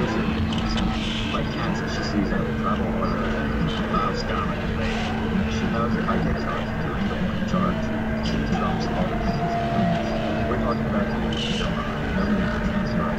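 A dense, noisy layered sound collage over a steady low hum, with indistinct voice-like fragments flickering through it.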